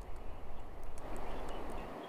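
Steady faint hiss of distant city traffic picked up by an outdoor microphone, with a low hum underneath that cuts out near the end.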